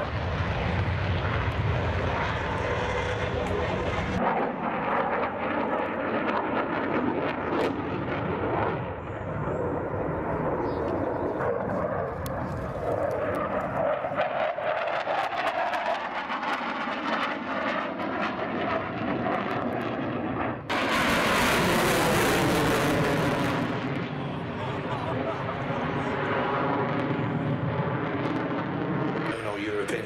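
Twin-engine MiG-29 fighter jet on afterburner, loud and continuous through a takeoff run and flypasts. Its pitch sweeps up and down as it passes, with a sudden, loudest blast of jet noise about 21 seconds in that lasts a couple of seconds.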